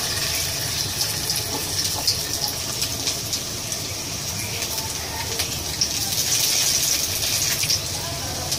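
Popcorn-fritter batter frying in hot oil in a kadai: a steady sizzle with scattered crackles and pops.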